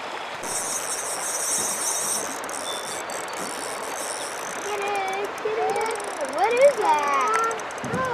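Steady rushing of river water. There is a high hiss for about two seconds near the start, and voices in the second half.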